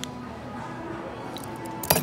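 A case-back wrench turning the back of a Diesel wristwatch tight: a small click at the start, a faint tick, then a sharp metal clack near the end.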